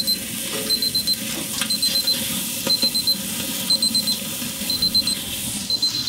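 Digital grill thermometer alarm beeping: bursts of four quick high-pitched beeps, repeating about once a second.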